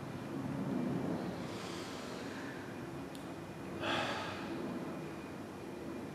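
A person breathing audibly: a soft breath a little under two seconds in, and a short, louder breath just before four seconds, over a steady low room hum.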